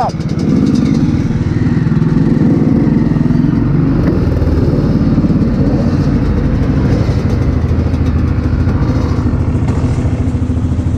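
Dirt bike engine running steadily at low revs close to the microphone while the bike is ridden slowly.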